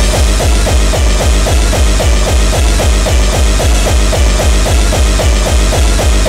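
Early hardcore (gabber) dance music with a fast, steady kick drum, about three beats a second, running without a break.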